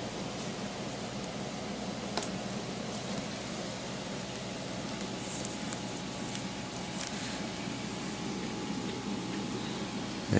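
Steady low hiss of room tone, with a few faint clicks and soft crinkles from plastic-wrapped sticker packs being handled, about 2, 5 and 7 seconds in.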